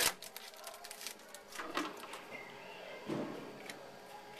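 Faint rustling and small clicks of trading cards and foil pack wrappers being handled and sorted by hand, with a soft low bump about three seconds in.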